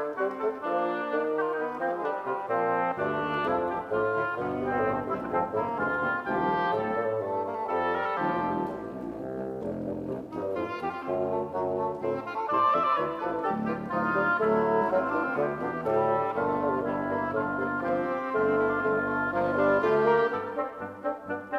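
Double-reed quartet of oboe, cor anglais, bassoon and contrabassoon playing a contemporary classical piece, several parts moving at once. Low bass notes join about three seconds in; the texture thins briefly near the middle, then fills out again.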